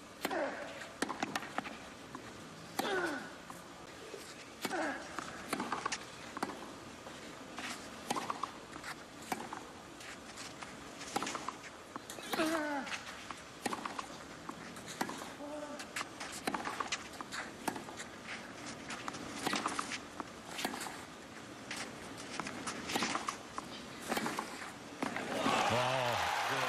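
Tennis rally on a clay court: racket strikes on the ball at irregular spacing, many of them with a player's grunt, and shoes scuffing on the clay. Crowd applause breaks out near the end as the point is won.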